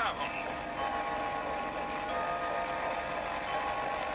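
Cartoon soundtrack heard through a television speaker: a few held musical tones that change pitch every second or so, over a steady low rumble.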